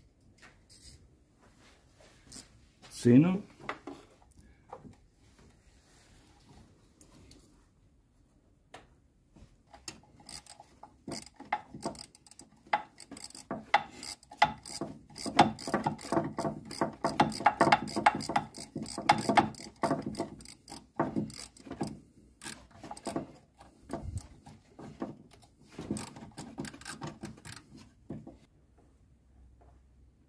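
A hand socket ratchet clicking in long rapid runs of strokes as a 10 mm bolt on the timing-belt end of the engine is worked loose from above. There is a short rising squeak-like sound about three seconds in, which is the loudest moment.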